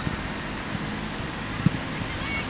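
Wind buffeting the camera microphone in a steady, uneven low rumble, with a brief low bump about a second and a half in.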